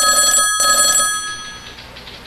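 A telephone bell ringing: one sudden, loud burst of ringing, broken briefly about half a second in, that then rings out and fades away over about a second.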